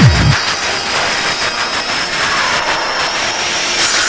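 Hard techno DJ mix in a breakdown: the pounding kick drum stops about half a second in, leaving a noisy synth wash with a steady high tone. A rising sweep builds toward the end.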